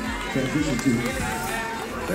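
Indistinct voices of people talking in a crowd, with background music underneath.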